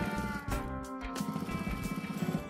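Background music, with a home sewing machine stitching underneath in a fast, even rhythm.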